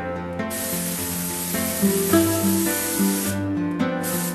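Aerosol cooking spray hissing onto a baking sheet in one long burst of about three seconds, then a short second burst near the end, over acoustic guitar music.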